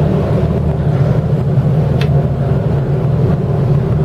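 Twin inboard engines of a Carver 41 motor yacht idling with a steady low rumble while the boat is eased back into a slip. One short sharp tick about two seconds in.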